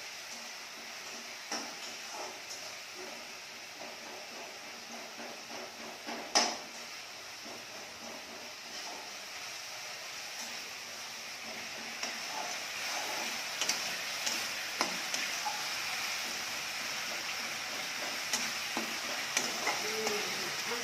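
Ground masala paste frying in oil in a kadhai on a gas stove, sizzling steadily while a ladle stirs and scrapes against the pan with scattered clicks. A sharp knock comes about six seconds in, and the sizzle grows louder in the second half.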